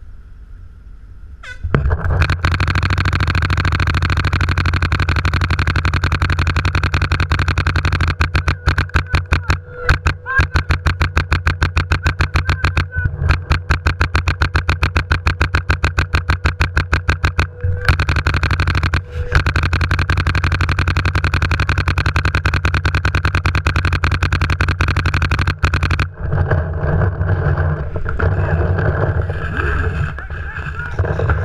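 Paintball marker firing in long, rapid strings of evenly spaced shots, heard close up through a camera mounted on the gun. The firing starts suddenly about two seconds in and breaks off near the end, where looser field noise takes over.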